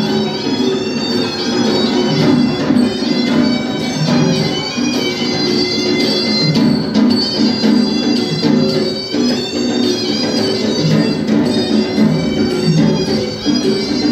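Procession music: a shrill, reedy pipe playing a continuous melody over drums.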